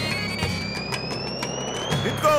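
Cartoon sound effect: a whistling tone rising slowly and steadily in pitch over a steady rushing noise and low rumble.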